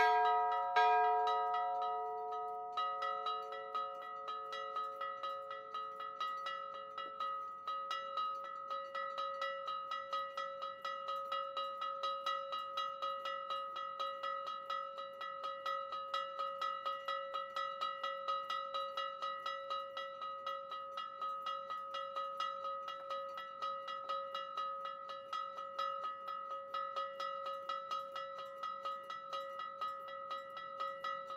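Church bells ringing a solemn peal. A larger bell's strokes ring out and fade over the first few seconds. Then a higher bell is struck over and over in a quick, even rhythm, its ringing overlapping from stroke to stroke.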